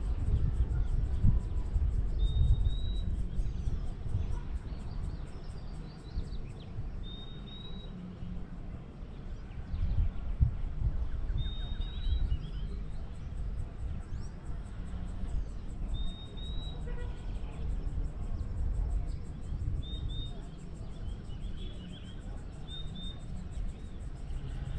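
Wind buffeting the microphone as an uneven low rumble, while a bird gives short high chirps every few seconds, clustering near the end.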